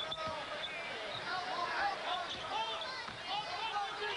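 Basketball game sound: sneakers squeaking sharply and repeatedly on the hardwood court and a ball bouncing, over arena crowd noise.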